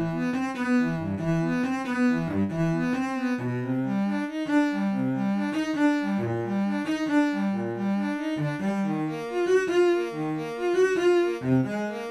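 Sampled cello from the free Project Alpine "Alpine Cello" Kontakt library playing a classical melody of short, separate notes. It sounds completely dry, with no reverb or EQ: the library's raw, unprocessed sound.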